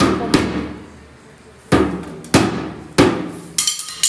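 A child hitting a small toy drum with a pair of drumsticks: about six hard, ringing strikes at uneven intervals. A bright metallic jangle follows the last strike near the end.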